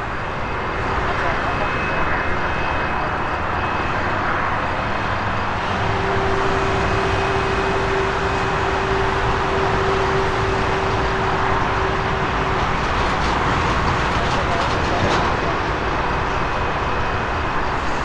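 Airbus A330-300 with Rolls-Royce Trent 700 engines on its takeoff run and climb-out, heard from a distance as a steady jet roar. A steady hum rises out of the roar about six seconds in and fades at about twelve seconds.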